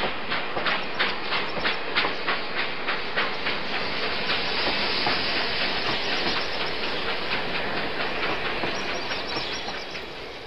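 Steam train sound effect: wheels clacking over rail joints about three times a second, giving way after about four seconds to a steady steam hiss that fades near the end.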